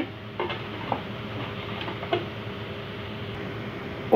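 Sliced onions frying in a pan under freshly added spice powder: a faint, steady sizzle with a few light, short taps.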